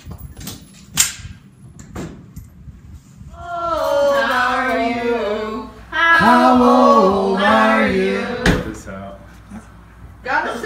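A few sharp gunshot cracks at an indoor shooting range in the first two seconds, the loudest about a second in. Then voices singing together for about five seconds, ending with a sharp knock.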